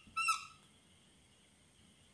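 A whiteboard marker squeaking against the board as a stroke is written. There is one short, high squeak just after the start, then only faint room noise.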